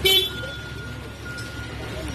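A short vehicle horn toot right at the start, over the murmur of voices and the low rumble of road traffic.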